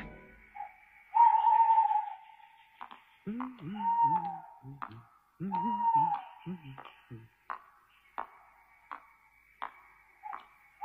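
Sparse film soundtrack: three long whistle-like notes, each falling off at its end, with two runs of short low vocal sounds in the middle and scattered sharp clicks.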